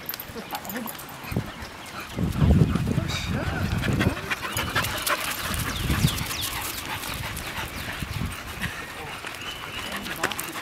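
American Eskimo dog panting as it runs and plays with other dogs, with people's voices talking indistinctly in the background.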